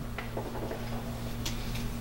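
A pause in speech: a low steady hum with a few faint ticks.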